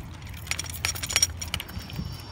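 Metallic clinking and jingling from a bicycle ridden over rough pavement, a cluster of sharp clinks lasting about a second, over a steady low rumble of tyres and wind.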